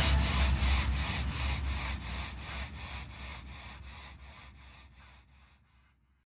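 Closing seconds of a happy hardcore track: a pulsing wash of noise, about four pulses a second, over a low bass rumble, fading out to silence near the end.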